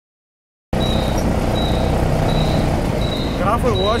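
Wind and road rumble on a bicycle-mounted camera climbing a cobbled street, cutting in suddenly after a moment of silence, with a faint high squeak repeating about every 0.7 s. A voice calls out near the end.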